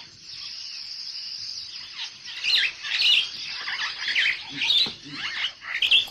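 Birds chirping in short, repeated calls over a steady high hiss, the calls mostly in the second half.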